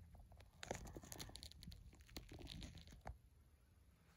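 Faint crackling, rustling and clicking of the camera being handled and repositioned, ending in a light knock about three seconds in.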